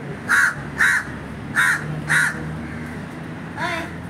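A crow cawing: four loud, harsh caws in two pairs over the first two seconds or so, then a fifth, different call near the end.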